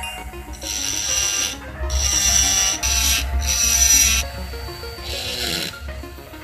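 Handheld rotary tool with a small burr bit grinding into an aluminium piece, in four bursts of rasping with a high whine as the bit is pressed on and lifted off.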